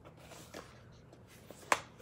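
Hands handling a boxed makeup brush set, with a faint tap about half a second in and a single sharp click near the end.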